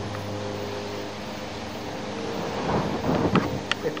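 Wind blowing across the camera microphone: a steady rushing with a faint low hum beneath it, gusting harder near the end, with a couple of short handling clicks.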